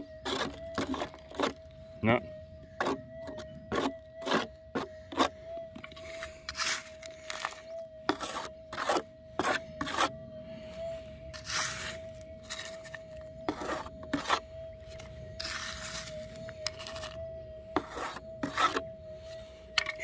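Minelab GPZ 7000 metal detector's steady threshold tone, one unbroken mid-pitched hum, while clay lumps and a plastic scoop of soil are knocked and rubbed against the coil, giving a string of sharp clicks and a few rasping scrapes. The tone stays level with no target signal: the pieces tested are not the gold.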